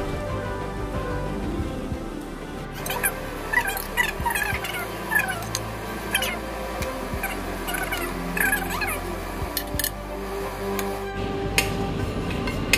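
Background music with steady held tones and short repeated notes, with a few sharp clinks of metal tongs against a glass baking dish.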